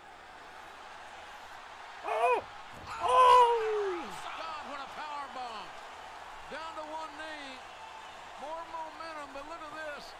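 Two loud, high-pitched yells over steady arena crowd noise, about two and three seconds in; the second is a long cry that falls in pitch. More voices follow.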